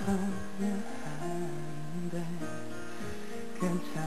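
Acoustic guitar playing the slow, gently plucked and strummed chord intro of a ballad, with notes ringing on under each new chord.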